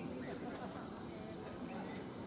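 Distant, indistinct voices of cricket players talking and calling to each other.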